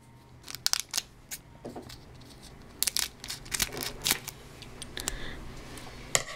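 Foil trading-card pack wrapper crinkling and tearing as it is handled and opened, in scattered short crackles.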